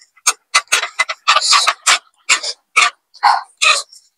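Close-miked chewing of a mouthful of ramen noodles and shrimp: a quick, irregular run of short, wet mouth smacks, about three a second.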